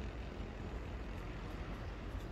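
Steady low rumble of outdoor background noise with no distinct events.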